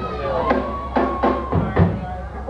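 A live rock band's drums giving about five loose, uneven hits, the heaviest near the end, over a steady held tone from an amplified instrument.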